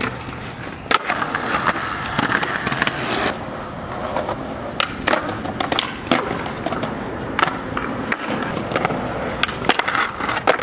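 Skateboard wheels rolling on concrete, broken by several sharp clacks of the board's tail popping and the board landing as flatground tricks are tried.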